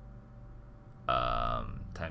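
A man's drawn-out hesitation sound, a held "uhh", starting about a second in and lasting under a second.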